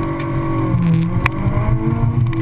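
Honda S2000's four-cylinder engine running hard on an autocross run, heard from the open cockpit; the revs dip briefly near the middle and then climb again. A single sharp click comes a little past halfway.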